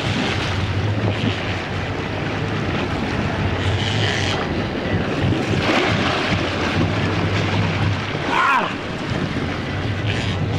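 Sportfishing boat's engines running astern, with propeller wash churning the water and wind buffeting the microphone. A low engine drone rises and falls through it, strongest in the first second or so and again a little past halfway.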